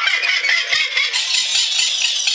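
A man laughing hysterically, in high-pitched, choppy, breathless bursts.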